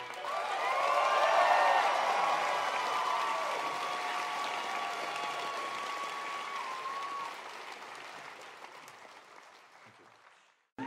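Concert audience applauding and cheering at the end of a song, with whoops and shouts over the clapping. The applause peaks in the first couple of seconds and then fades out gradually to near silence.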